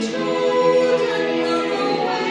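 Children's choir singing together, holding long notes with a change of note at the start.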